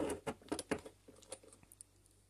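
Plastic screw cap being twisted off a small glass bottle of model cement: a quick run of small clicks and ticks in the first second, then a few fainter ticks.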